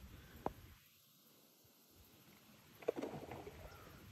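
Faint, quiet background with one small click about half a second in; a short spoken "Oh" near the end.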